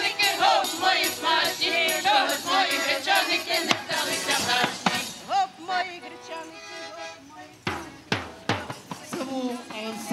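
A choir of women's voices singing a Ukrainian folk song, with a hand frame drum beating time; the song winds down about halfway through, followed by a few scattered strokes and then a man's voice starting to talk near the end.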